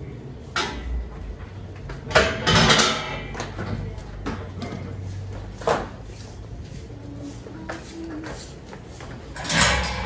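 Holstein dairy cows moving past close by: scattered knocks and thuds, with a loud rushing burst lasting about a second at around two seconds in and another near the end.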